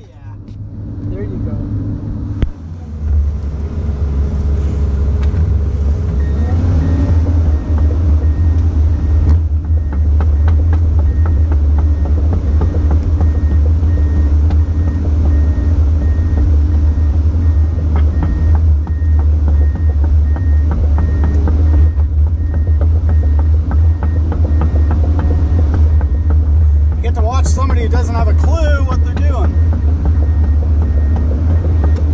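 Komatsu PC200 excavator's diesel engine running heard from inside the cab, rising in the first few seconds and then holding a steady low drone as the machine works. From about six seconds in, an alarm beeps faintly at an even rate. Near the end there is a brief wavering high-pitched sound.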